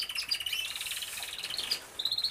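Zebra finches chirping: a fast, even train of short high notes, about ten a second, with a second, slightly lower chirping line overlapping it for most of the time.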